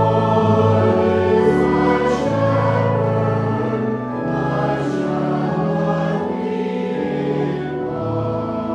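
Church organ playing held chords that change every second or so, with a group of voices singing along.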